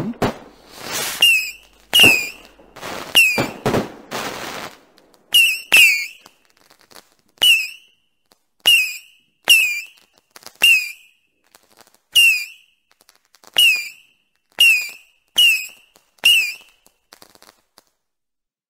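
Fireworks going off. A few seconds of hissing whooshes, then a string of sharp bangs about one a second, each with a short falling whistle, stopping shortly before the end.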